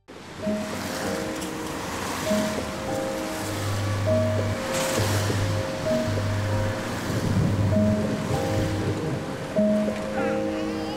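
Gentle background music of slow held notes over a steady rushing noise, with low bass notes joining about three and a half seconds in.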